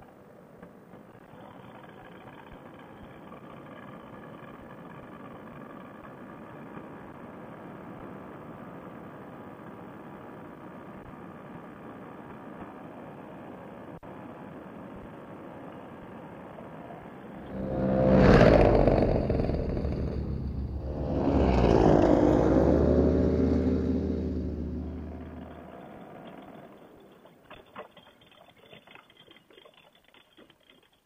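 Paramotor two-stroke engine running at low throttle as the trike touches down and rolls on grass. About two-thirds of the way in, it surges loudly twice over several seconds with a wavering pitch, then dies away. Light rattles and clicks follow near the end.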